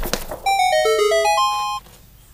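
A short chiming jingle sound effect: about eight clean, overlapping notes that step down in pitch and then climb back up, ending on a higher note a little before the end. It works as a discovery cue for a clue being found.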